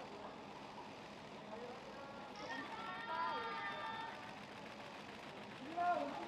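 High-pitched voices calling out over a steady outdoor murmur with distant traffic; one drawn-out call comes about halfway through.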